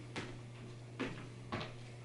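Dance steps in flat shoes on bare wooden floorboards: three short knocks, about half a second to a second apart, over a steady low hum.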